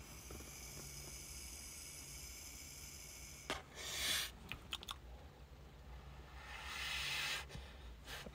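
A long draw on a vape pen, heard as a faint steady hiss for about three and a half seconds, then a short breath out and, near the end, a longer breathy exhale of vapour.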